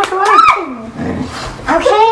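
A dog's drawn-out, voice-like vocalizations that bend up and down in pitch almost like speech. There is a lull a little before the middle, and then another long call near the end.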